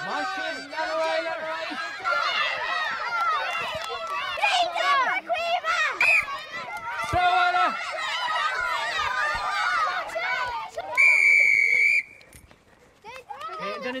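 A crowd of children shouting and calling out together as they run about in a game. Near the end comes a loud, steady, shrill whistle blast of about a second, and the voices drop away right after it.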